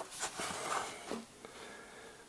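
Faint handling noise of a handheld camera being picked up and carried: soft rustling and a few light clicks and knocks in the first second, then quieter.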